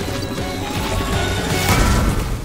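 Cartoon action music with fight sound effects: a rising whoosh that builds into a heavy crash near the end.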